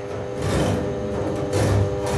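Improvised noise music from double bass and electronics, in a quieter passage: a sustained drone, broken by two short hissy bursts about half a second in and near the end.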